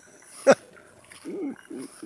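A man laughing to himself: one sudden sharp burst about half a second in, then a run of short low chuckles.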